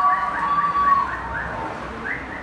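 An electronic siren-like alarm sound: short rising chirps repeating about five times a second, with a steady high tone under them for the first second, growing quieter toward the end.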